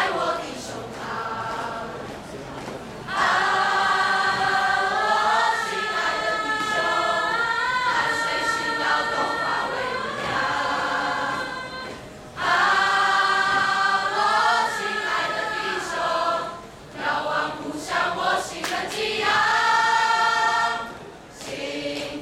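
Large mixed choir of students singing a patriotic song together, loud held phrases broken by short quieter gaps.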